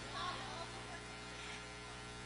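Steady low electrical hum in the recording, with a faint voice in the background just after the start.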